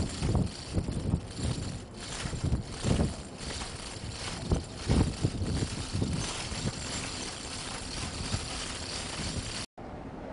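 Wind buffeting the microphone in uneven gusts over a steady rushing noise on an open ship's deck at sea.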